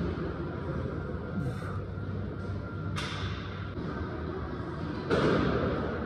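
Steady gym room noise, broken by a sharp knock about three seconds in and a louder thud about five seconds in.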